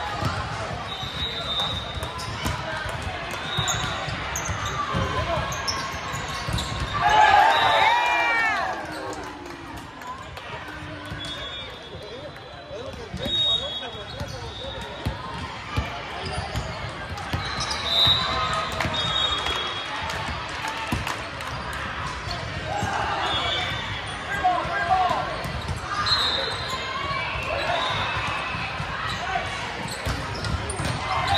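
Volleyballs being struck and bouncing on a hardwood gym floor in a large echoing hall, with steady background chatter of players and spectators and one loud voice about seven seconds in.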